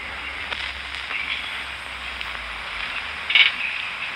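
Hiss and crackle of an early-1930s optical film soundtrack with no speech, and a brief louder burst near the end.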